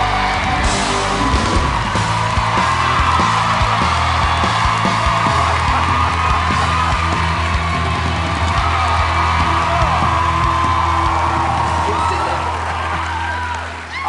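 A live rock band with a singer finishing a hard-rock song, with electric guitar and a wavering high vocal line held over a long sustained low note. The final chord fades away just before the end. Yells and whoops from the audience sound over the music.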